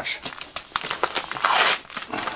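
Paper packaging being crinkled and torn by hand: a run of short crackles and rustles, with a longer tearing rasp about one and a half seconds in.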